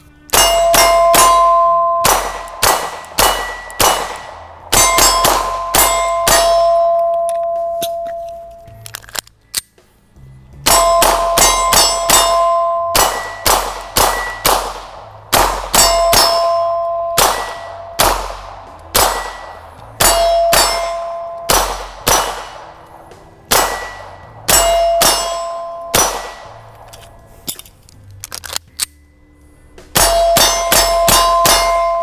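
9 mm Beretta 92 pistol fired in quick strings of shots at steel targets, each hit setting the steel plates ringing with a two-note clang that rings on for a second or two after each string. The strings come one after another, with a short pause about nine seconds in.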